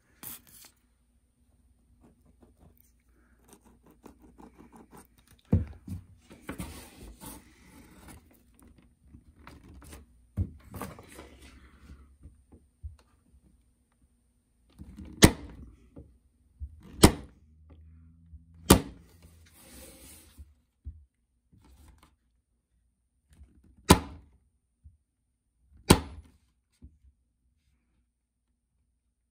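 Corded electric staple gun firing staples one at a time to fasten glued wooden corner blocks into the corners of a wooden strainer frame: separate sharp shots a second or more apart, the five loudest in the second half. Quieter handling of the wood and glue in between.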